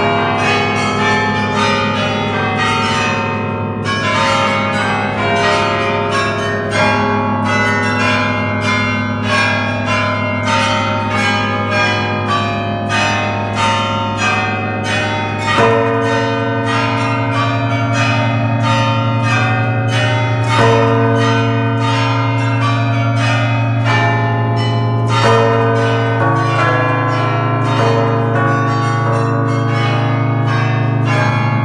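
Carillon bells played automatically by the tower's drum-play: a pinned barrel trips hammers onto the bells, here close to the bass bells, in a fast continuous melody with many overlapping strikes over the steady low hum of the heavy bells. About halfway through, a deeper bass bell comes in and rings on loudly beneath the tune.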